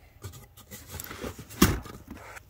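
Cardboard boxes being handled and shifted, with light rustling and small knocks, and one loud sharp thump about one and a half seconds in.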